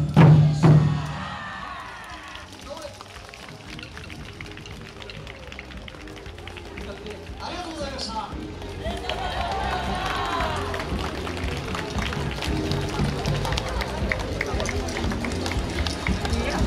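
Taiko drums strike the last few loud beats in the first second and ring out, ending the dance music. From about halfway on comes crowd chatter of dancers and onlookers talking and calling out.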